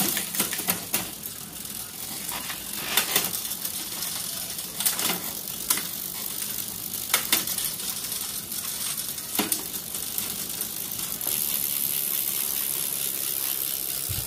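Drivetrain of a Giant ATX 830-S mountain bike with Shimano Altus gearing, cranked by hand with the rear wheel spinning off the ground. The chain runs over the cassette with a steady ticking hiss, and sharp clicks come every second or so as the gears are changed, shifting smoothly.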